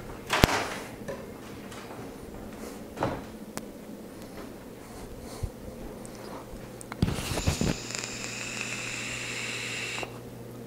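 Hard knocks and clicks of PC parts being handled on a tabletop: one sharp knock about half a second in, a few softer clicks, and a short run of clatter about seven seconds in. A steady high hiss follows the clatter.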